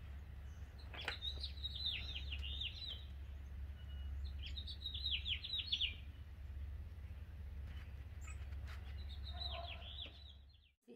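A small songbird singing three short phrases, each a quick run of falling chirps lasting about a second or two, over a steady low rumble.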